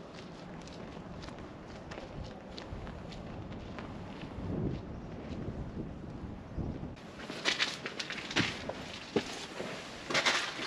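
Footsteps of one person walking, faint and soft at first, then from about seven seconds in louder, sharp steps on stone going through an arched stone doorway.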